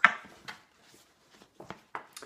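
Pages of a paperback book being flipped and handled: a few short paper rustles and taps with quiet gaps between.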